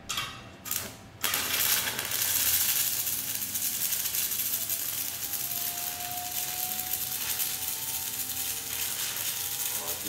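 Stick welding arc on aluminum plate: two brief crackles as the electrode is struck, then about a second in the arc holds and runs with a steady, dense crackling hiss.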